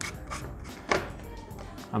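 Plastic handling noises from an electric mosquito racket's handle: a small click at the start and a sharper knock about a second in, over faint background music.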